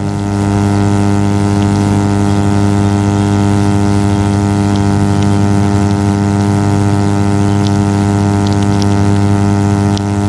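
Steady electrical mains buzz: a loud, unchanging low hum with a ladder of evenly spaced higher tones above it.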